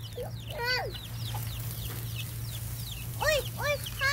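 Chickens clucking: arched calls about a second in and twice more near the end, with short high peeps in between.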